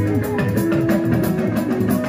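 Live mbalax band music with a steady drum beat and guitar.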